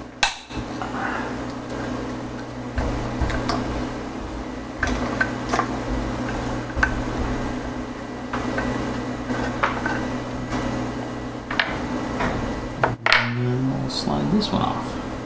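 Scattered small metallic clicks and clinks of a steel Allen key working the stop screw on a Sherline mill's saddle, about one every second or two at irregular intervals, over a steady low hum. A louder knock comes near the end, followed by a brief scrape of metal parts shifting.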